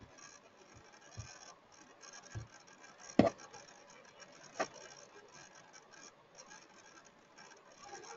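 Low background hiss with a few scattered short clicks and knocks, the loudest a little over three seconds in.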